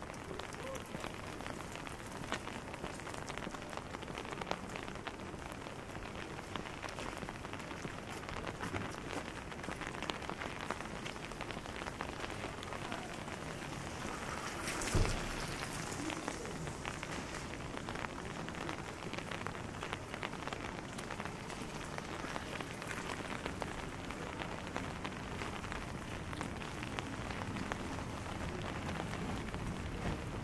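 Steady rain falling on wet city pavement and street, a continuous patter with many small drop ticks. About halfway through comes a single brief, louder thump.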